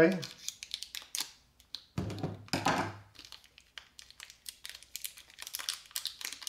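Scissors snipping the paper label band off a coiled USB cable, with paper crinkling and light clicks as the cable is handled; the busiest, loudest handling comes about two seconds in.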